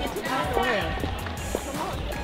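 Music with a steady low beat and a voice over it.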